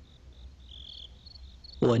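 Insects chirping, cricket-like: a faint, high chirp repeated a few times a second, with one longer chirp about a second in. A man's voice comes in near the end.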